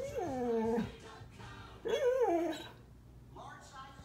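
A Doberman–Border Collie mix dog whining: two drawn-out whines, one at the start and another about two seconds in, each sliding down in pitch, while it watches out the window for the mail carrier.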